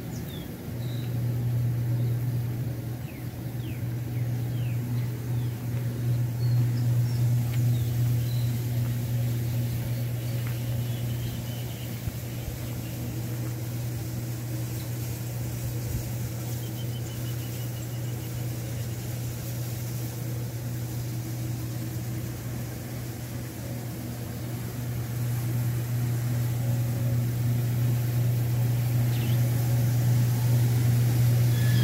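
A heavy diesel truck engine idling with a steady low hum that swells and fades a little in loudness. Faint bird chirps come through now and then.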